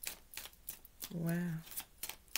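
A deck of tarot cards being shuffled by hand, the cards clicking and slapping together in quick, irregular strokes, several a second.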